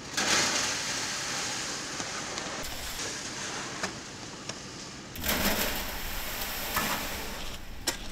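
A shovel scooping wet concrete from a metal bin and tipping it down a stainless-steel chute, the mix sliding down with a hissing scrape. This happens twice, the second pour starting about five seconds in.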